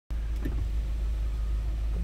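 Car engine idling, heard inside the cabin as a steady low rumble, with a faint brief knock about half a second in.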